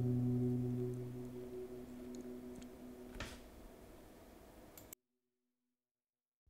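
Background music with an acoustic guitar chord ringing on and slowly fading, then cutting off to silence about five seconds in.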